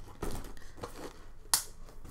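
Leather handbags being handled, moved and set down, with soft rustles and knocks and one sharp click about one and a half seconds in.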